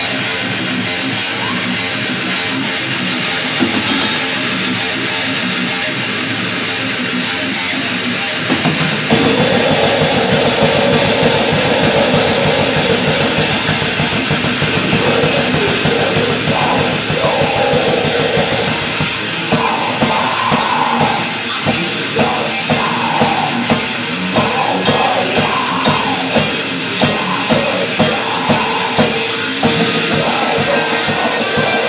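Live instrumental heavy metal from a nine-string electric guitar and a drum kit. The playing gets heavier and fuller about nine seconds in, and regular heavy accents land about once a second over the last ten seconds.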